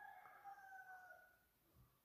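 Near silence: room tone, with a faint high tone that fades out after about a second and a half.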